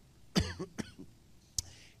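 A man briefly clearing his throat with a short cough about half a second in, followed by a faint sharp click shortly before the end.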